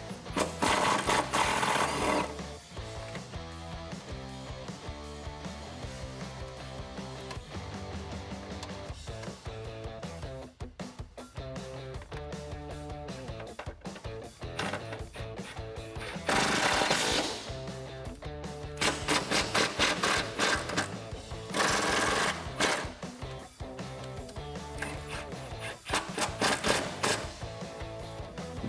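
Milwaukee Fuel cordless impact tool hammering on an 8 mm bolt in short bursts: one near the start as it loosens the bolt, then several in the second half as it drives the bolt back down tight. Background music plays throughout.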